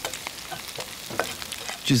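Chopped onion and chili sizzling in oil in a frying pan as they are sautéed, with a metal spoon clicking and scraping against the pan as it stirs them.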